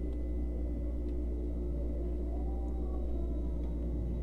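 Steady low hum with a faint steady high tone and no distinct events.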